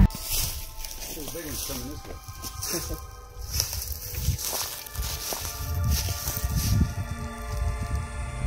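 Wind rumbling on a handheld phone microphone and scattered footsteps on forest ground, with faint low voices in the background.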